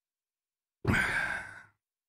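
A man's short breathy laugh: a single exhaled chuckle a little under a second long, starting about a second in and fading out.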